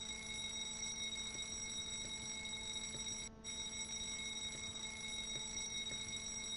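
Fire alarm sounding from a break-glass alarm web page: a steady, continuous ringing with a brief break in its upper tones about three seconds in.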